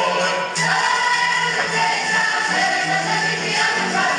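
A group singing a traditional Croatian folk song in chorus, with sustained, held notes over a steady low tone and a new phrase starting about half a second in.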